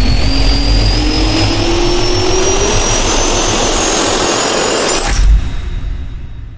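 Jet-turbine spool-up sound effect for a logo sting: a rising whine over a rushing noise, climbing steadily for about five seconds and ending in a loud hit, then fading out.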